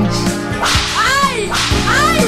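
Two whooshing DJ sound effects laid over the dance music, each a noisy sweep with pitch that rises and then falls, the first about a second in and the second near the end.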